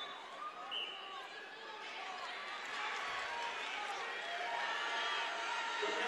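Arena crowd voices, many people calling out at once during a wrestling bout, growing louder toward the end.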